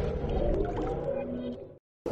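The tail of a channel's intro music: held synth tones with a low rumble, fading out and dropping to silence just before the end.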